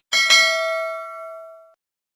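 Notification-bell 'ding' sound effect from a subscribe-button animation: a bright double ding, the second strike close behind the first and louder, ringing out and fading away over about a second and a half.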